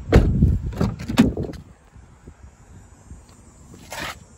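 A car's rear door shut with a heavy thump, followed by a couple of further knocks in the first second and a half, then a short latch click near the end as the front door is opened.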